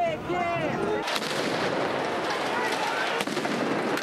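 A crowd of men shouting. About a second in, this gives way to the dense noise of a street clash, with several sharp bangs.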